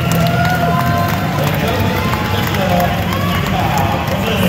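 Music playing over the voices of a crowd.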